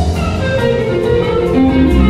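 A live jazz-funk band playing, with electric guitar and bass guitar over drums; held notes change pitch every half second or so, with light cymbal ticks in the second half.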